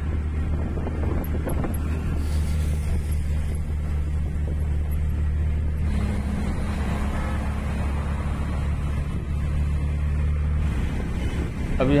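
The engine of a moving vehicle, heard from on board, runs with a steady low drone over road and wind noise. Its note steps up about halfway through and drops back near the end.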